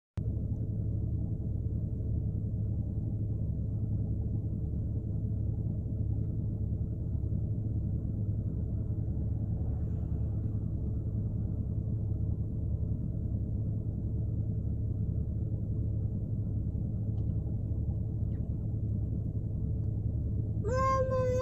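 Steady low rumble of a car heard from inside the cabin, typical of the engine idling.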